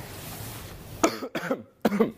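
A man coughing several times in quick succession, starting about a second in.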